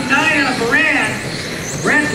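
Electric 1/10-scale RC touring cars with 10.5-turn brushless motors racing, their motor and gear whine rising and falling in pitch as they accelerate and brake through the corners, with a sharp rising whine near the end.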